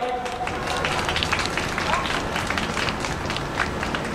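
Crowd applauding: a steady patter of many hand claps with a few voices among them.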